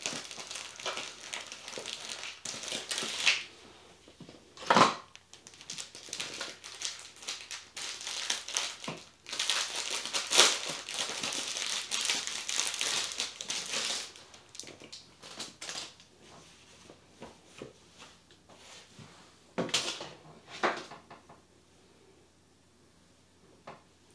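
Crinkly packaging of a pair of seamed tights being handled and opened and the tights pulled out: dense crackling for about fourteen seconds, then quieter, scattered rustles.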